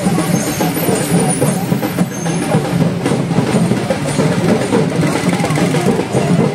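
Loud, steady din of a street procession: many voices at once mixed with a truck engine and procession drumming.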